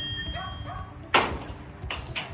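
Bright bell-like ding of an edited-in chime sound effect, several ringing tones that fade out over about a second. Just after a second in, a short noisy burst.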